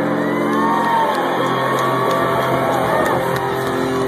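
A live rock band's guitars and drums ringing out on a held closing chord while the audience cheers and whoops over it, in a phone recording.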